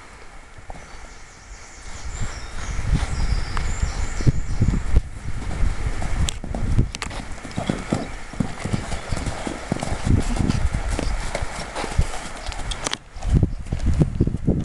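A ridden horse's hoofbeats, a steady rhythm of dull thuds on a sand arena surface, quieter for the first couple of seconds, as the horse canters round and over a small pole jump.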